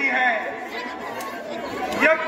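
A voice speaking briefly, with crowd chatter behind it in a large hall.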